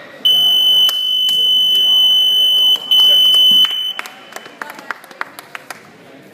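Electronic match-timer buzzer sounding the end of time: a loud, high, steady beep held for about two and a half seconds, a brief break, then a second shorter beep of under a second.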